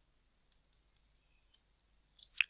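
Near silence with a few faint computer keyboard clicks, the clearest about one and a half seconds in.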